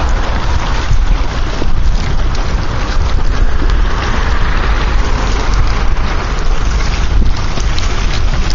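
Wind blowing hard across the microphone, a steady low buffeting rush, over choppy lake water lapping and splashing in small irregular ticks.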